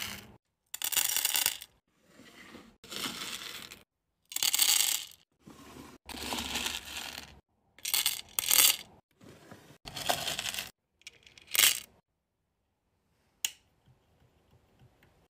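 Hard wax beads scooped with a metal scoop and poured into a metal wax warmer pot: a rattling pour of small hard pellets in a series of short bursts, each about a second long. Near the end there is a single short click.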